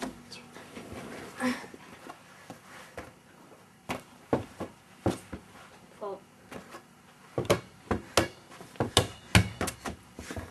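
A small ball bouncing on the floor and being slapped back and forth by hand in a game of two square: a run of sharp, irregular knocks that starts about four seconds in and comes thicker near the end.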